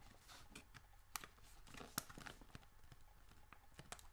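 Faint wet mouth clicks and smacks from chewing and tonguing a pinch of loose-leaf chewing tobacco, packing it down along the lower gum line. Scattered soft ticks over near silence, with two sharper clicks about one and two seconds in.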